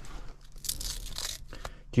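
A coiled USB phone cable being unwound and handled by hand: a scratchy tearing rustle a little after half a second, lasting under a second, then a couple of small clicks.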